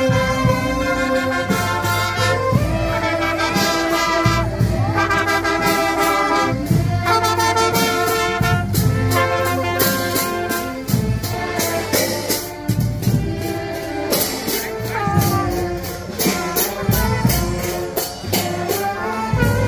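School marching band playing: clarinets and other wind instruments carry the tune while cymbals crash on a steady beat.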